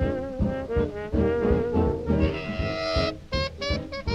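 Remastered 1920s–40s dance band recording, with the brass to the fore in a swing style. A held bright chord comes about two seconds in, followed by a run of short, detached notes.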